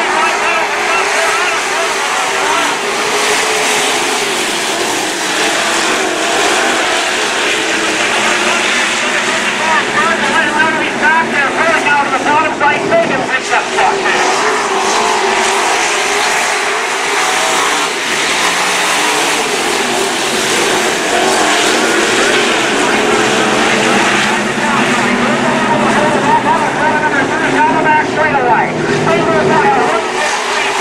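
A pack of dirt-track stock cars racing, several V8 engines running at once and revving up and down as they pass through the turns, with no letup.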